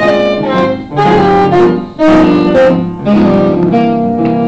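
Jazz saxophone playing a melody live, sustained notes in short phrases with brief breaks between them about every second.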